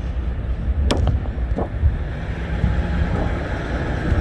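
Low, steady outdoor rumble with wind buffeting the microphone, and a sharp click about a second in.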